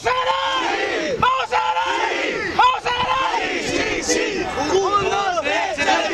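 A huddled group of teenage male footballers shouting together in a loud team battle cry, many voices overlapping in a run of rising-and-falling shouts.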